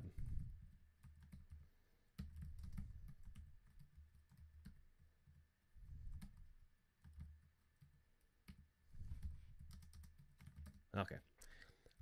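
Faint typing on a computer keyboard: scattered, irregular key clicks, with a dull low rumble coming and going underneath.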